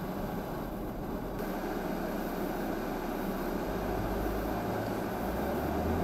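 Steady road and engine noise heard inside a moving car's cabin, with a low engine hum that changes pitch about two-thirds of the way through.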